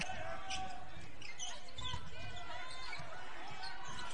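Game sound on a basketball court: a ball bouncing on the hardwood against steady crowd chatter in the gym.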